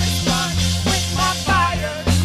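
Live church worship music: women singing into microphones over held keyboard chords, with a steady beat.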